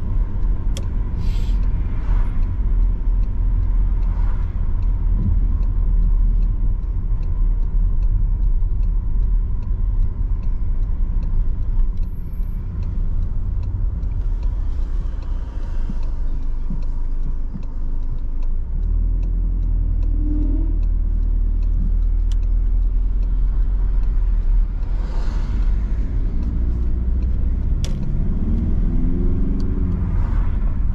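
Car cabin noise on the move: a steady low rumble of engine and tyres on the road. The engine note rises as the car speeds up twice, about two-thirds of the way through and again near the end.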